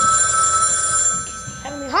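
A telephone ringing: one steady ring that dies away a little past the middle, and then a child's voice starts answering the call near the end.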